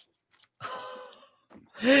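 A man's short, breathy gasp about half a second in, fading away, with a word of speech starting near the end.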